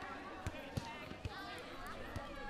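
A person talking, with a few short knocks; the loudest knock comes about three-quarters of a second in.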